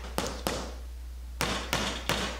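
Hammer tapping small nails into a fibreboard sheet: two sharp taps close together near the start, then a pause, then more taps about a second and a half in.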